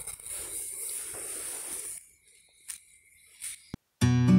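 Faint background hiss for about two seconds, then it drops to near silence, broken by two short faint clicks.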